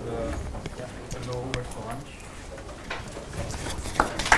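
Indistinct, quiet talk and murmuring voices in a lecture room, with low room hum.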